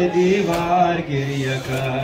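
A male voice chanting a noha, a Shia mourning lament, in long held melodic notes.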